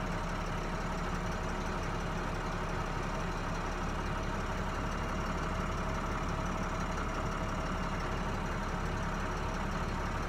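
International Maxforce diesel engine of a 2015 box truck idling steadily at about 650 rpm, heard from inside the cab. The engine was already running and is warm.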